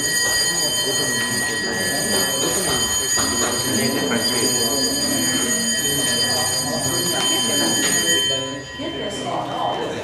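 Background murmur of several people talking in a council chamber, with a steady high-pitched electronic tone of several pitches over it that cuts off suddenly about eight and a half seconds in.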